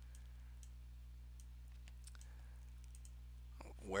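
Faint, irregular clicking from a computer mouse over a steady low electrical hum. A man starts to speak at the very end.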